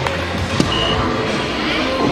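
A soft-tip dart hitting an electronic dartboard: a sharp click about half a second in, followed by the machine's short high beep. Near the end, sweeping electronic sound effects from the machine as it signals the end of the player's turn, over background music.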